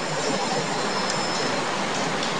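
Steady hiss of background noise with nothing else happening in it.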